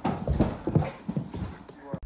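Large soft-sided suitcase bumping down carpeted stairs: a quick run of irregular thuds, one step after another.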